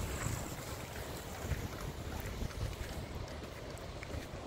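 Wind buffeting a phone microphone with an uneven low rumble, over the steady hiss of ocean surf.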